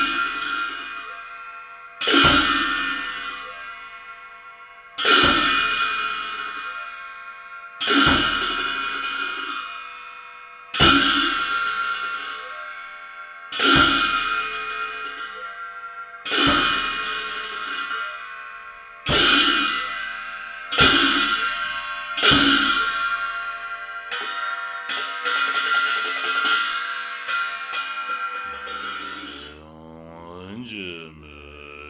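Large ritual cymbals of cham dance music struck about once every three seconds, each crash ringing out and fading before the next. Near the end the strikes come quicker and softer.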